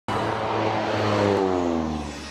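Propeller airplane passing by: a steady engine tone with many overtones over a rushing noise, its pitch falling steadily through the second half as it goes past.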